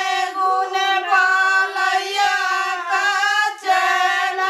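A group of women singing a wedding geet (folk song) together, unaccompanied, in long drawn-out notes that glide between pitches, with a brief breath break near the end.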